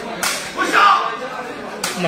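Two sharp cracks of a sepak takraw ball being kicked, about a second and a half apart, with a loud shout between them.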